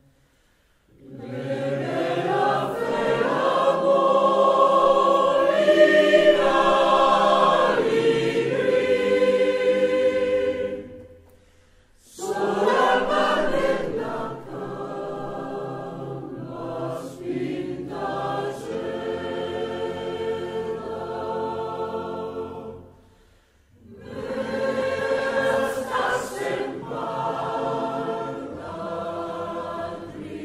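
Mixed choir of men's and women's voices singing in harmony, in three long phrases with brief pauses about a second in, near the twelve-second mark and near the twenty-three-second mark.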